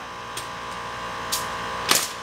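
Three sharp shots from a Senco pneumatic nailer fastening siding, the last and loudest near the end, over a steady background hum.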